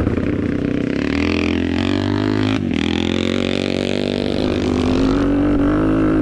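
Yamaha HL500's 500cc single-cylinder four-stroke engine pulling under load while ridden. The note dips briefly about two and a half seconds in as the throttle is closed or a gear is changed, then climbs steadily again.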